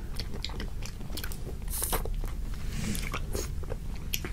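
Close-miked biting and chewing of Hershey's almond chocolate ice bars: a run of short, sharp crackles as the chocolate shell breaks, with chewing in between.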